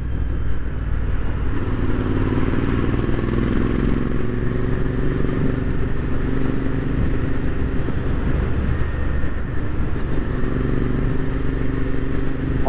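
Royal Enfield Interceptor 650's parallel-twin engine and exhaust running at a steady cruise, heard from the rider's seat with wind rushing over the microphone. The engine note holds level, with no revving.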